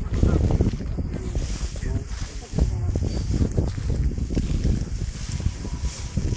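Wind buffeting the microphone in an uneven low rumble, with voices in the background.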